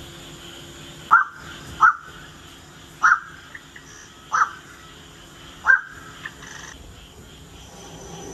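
Recorded crow-like calls of a black-crowned night heron played from an exhibit speaker: five short, loud calls at uneven intervals over about five seconds, with a few fainter notes among them.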